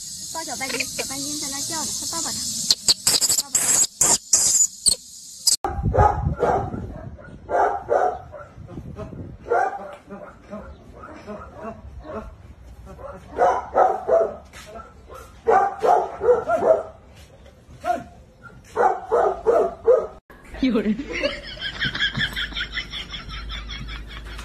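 A dog barking in short runs of several barks, a run every second or two, after several seconds of high hiss. Near the end it gives way to a higher, wavering sound.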